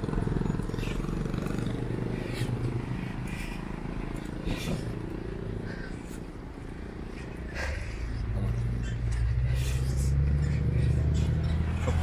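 Wind and road rumble on the microphone from a moving bicycle, with scattered clicks and rattles. Over the last few seconds a motor vehicle's engine hum builds and grows louder.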